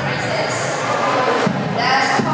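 A girl singing solo into a microphone over a hall PA, with audience murmur; her voice thins out for most of the moment and a new sung phrase starts near the end.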